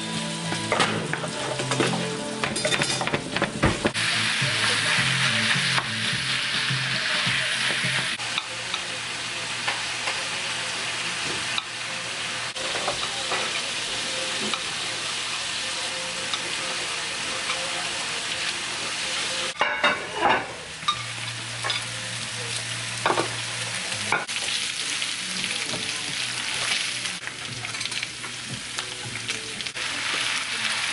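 Ground beef sizzling as it fries in a nonstick frying pan, with a utensil scraping and clicking against the pan as the meat is stirred and broken up. A few louder knocks come about two-thirds of the way through.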